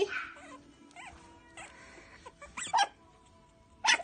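Yorkiepoo puppies whimpering and yipping: a few short, high cries, one about two and a half seconds in and a louder one near the end.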